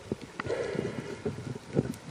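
Irregular underwater knocks and clicks, with a short hiss of water about half a second in, from a freediving spearfisher's speargun and camera moving underwater.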